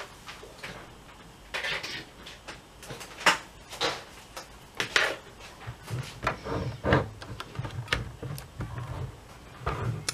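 Scattered plastic clicks and knocks as a Sabrent USB 3.0 SATA lay-flat hard-drive dock and its AC adapter cable are handled and the power plug is pushed in, about a dozen short taps spread through the stretch.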